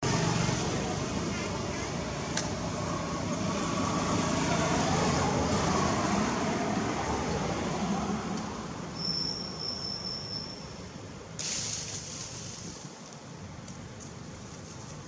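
Outdoor background noise, a steady hiss-like hum with faint voices in it. A thin high tone sounds briefly about nine seconds in, and a short burst of noise about eleven and a half seconds in.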